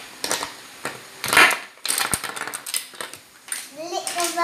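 Hard plastic toy pieces clicking together and knocking on a tabletop as they are handled, a string of small sharp clicks with a louder scraping rustle about a second and a half in.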